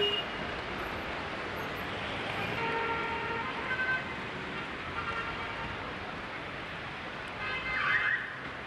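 Steady outdoor urban background noise in an old camcorder recording, with a few short pitched tones about three and four seconds in and a brief rising squeal near the end.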